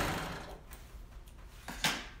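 Sewing machine stitching, then stopping within the first half second. A few faint clicks follow, and a sharper click comes near the end.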